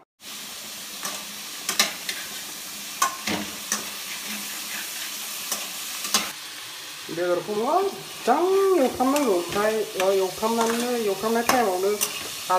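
Meat and potato pieces sizzling as they fry in a steel kadai, with a spatula clicking and scraping against the pan now and then. In the last five seconds a voice with a rising and falling melody sounds over the frying.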